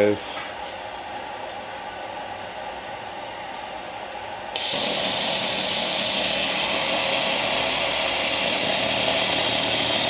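A fan runs steadily, likely the fume extractor. About four and a half seconds in, a handheld Everlast 301 pulse laser cleaner starts firing on a metal engine cylinder head: a sudden, loud, steady hiss as the beam ablates the surface.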